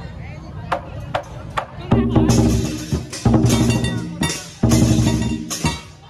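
Lion dance drum and cymbals: light taps for the first couple of seconds, then three loud rounds of drumming with clashing cymbals, each about a second long.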